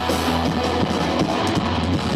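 Rock band playing live at full volume: electric guitars, bass guitar and drum kit.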